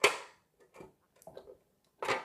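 A stand mixer's tilt-head clunks sharply once as it is raised and locks upright, followed by a few faint clicks about a second in as the wire whisk is handled in the steel bowl.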